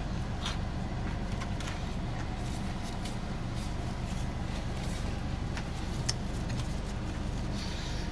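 Steady low hum of a car engine idling, heard inside the cabin, with a few faint clicks from chewing and handling a sandwich.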